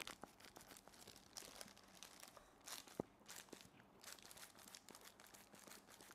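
Near silence, with faint rustling and small clicks from hands in thin plastic gloves handling a marker and its airbrush holder. A slightly sharper click comes about three seconds in.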